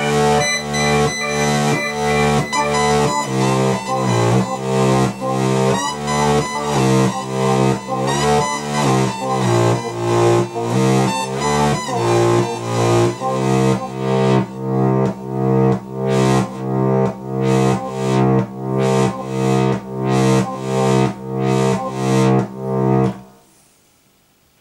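Roland JD-XA synthesizer playing an arpeggiator patch: a steady, repeating pulsed note pattern over held low notes, loud. It stops abruptly about a second before the end.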